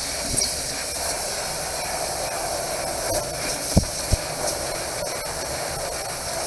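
KYSON 2000 W fiber laser cutting 16-gauge stainless sheet, with a steady hiss as the head runs the cut. Two short low thumps come a little past halfway, about a third of a second apart.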